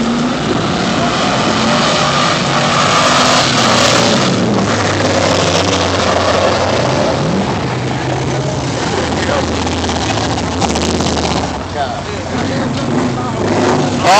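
Car engines revving hard and tyres spinning as cars do burnouts on the street, a loud continuous roar of engine and tyre noise, with people shouting over it.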